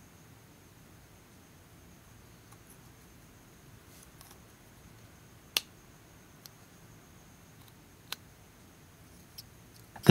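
Quiet handling of an opened Hitachi Microdrive and a USB CompactFlash card reader, with a few sharp isolated clicks; the loudest comes about five and a half seconds in, as the drive is seated in the reader.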